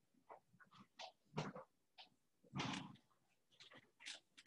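Dry-erase marker squeaking and scratching on a whiteboard in a series of short, faint strokes as writing goes on.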